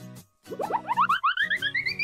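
Light background music with a cartoon sound effect: a quick run of short notes climbing steadily in pitch, starting about half a second in and ending near the close.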